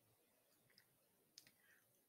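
Near silence, with two or three faint short clicks around the middle.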